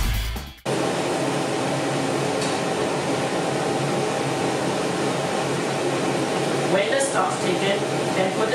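Electronic background music cuts off suddenly in the first second. Then comes the steady whir of a kitchen range hood extractor fan running over the stove.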